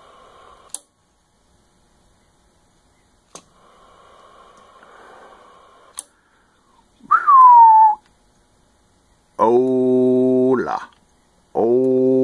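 CB radio being keyed for a transmit test: sharp switch clicks and faint static, then a single falling whistle into the microphone, then two steady buzzy held tones of over a second each, sent out while the power and SWR meters are read.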